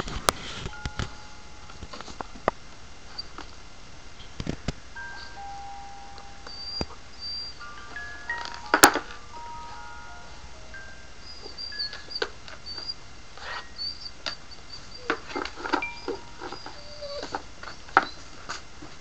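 A toy doll's electronic lullaby playing: a slow tune of plain single high notes, with scattered knocks and rustles around it. The loudest is a sharp knock about halfway through.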